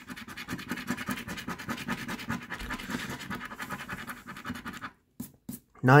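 A coin scratching the coating off a scratch-off lottery ticket in rapid, rasping strokes, uncovering the winning-numbers row. The scratching stops about a second before the end, followed by a couple of light taps.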